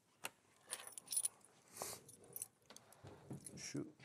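A scatter of sharp clinks and a short rattle of small hard objects being handled, with a brief rustle in the middle; a man starts to speak at the very end.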